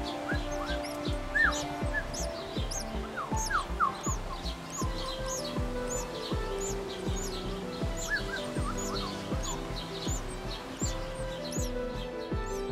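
Background music with held chords and a steady beat, over rapid, high, repeated chirping of northern cardinal nestlings begging in the nest.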